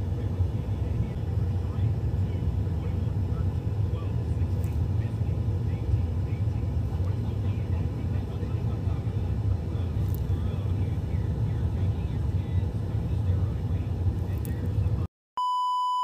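A steady low rumble of background noise, which cuts out about a second before the end. A steady test-card beep follows over the colour bars.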